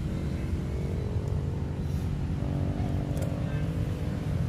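A motor engine running steadily at a constant low pitch, with a faint click about three seconds in.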